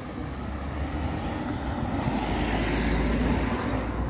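A car passing on the street, its engine and tyre noise swelling to a peak about three seconds in, then fading.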